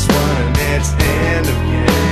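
Rock band music: sustained bass notes under guitar, with drum hits keeping a steady beat about twice a second.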